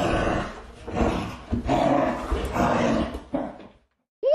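Rough growling and snarling in about four bursts of under a second each, cutting off just before the end.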